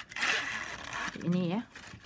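A strip of plastic strapping band is pulled through the tight woven strips, giving a zip-like scrape that lasts about a second.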